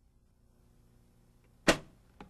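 Near silence, then a single loud, sharp snap about three-quarters of the way through: the hot and neutral leads shorted together, sparking at the short as the circuit breaker trips.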